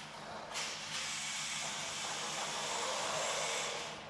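Toy remote-control car driving across a tile floor, its small electric motor and gears giving a steady hissing whir. The whir drops out briefly about half a second in and stops just before the end.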